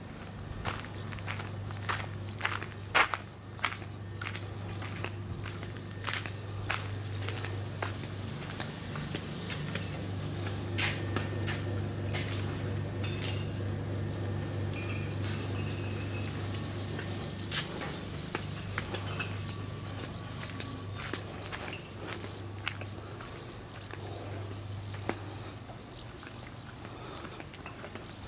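Footsteps of someone walking, irregular short steps and scuffs, over a steady low hum that fades near the end.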